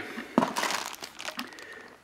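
Clear plastic zip bag crinkling as it is picked up and handled, with a sharp crackle about half a second in and then a fading rustle.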